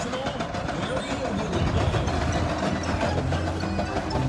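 Indistinct voices over a low, steady engine-like hum that is strongest in the middle.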